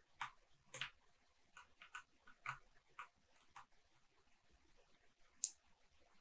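Near silence with faint, irregular clicks from a computer keyboard and mouse: about ten in the first three and a half seconds, then one sharper click near the end.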